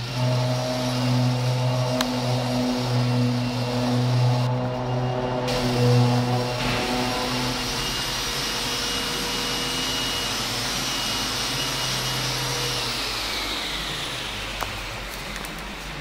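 Steady machine noise, a low hum under a whooshing whir, that fades and falls in pitch over the last few seconds.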